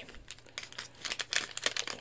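Small electronics packaging being handled and opened, crinkling in a run of quick crackles that thickens in the second half.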